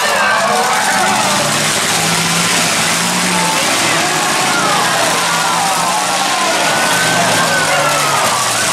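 Engines of several demolition derby cars running together in a loud, steady din, with voices over them.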